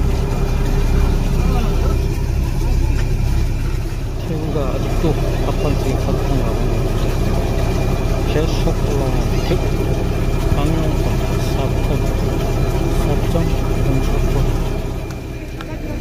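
A small fishing boat's engine idling steadily with a low hum under nearby voices, dropping away about a second before the end.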